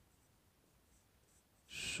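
Faint strokes of a marker writing on a whiteboard, a few short scratches, before a man's voice starts near the end.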